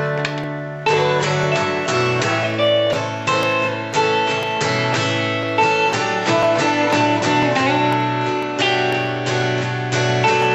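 Acoustic guitar strumming chords together with an electric guitar played through a small amplifier: an instrumental break in a country song, with no singing. The chords fade briefly, then a strong strum comes in about a second in and the playing carries on steadily.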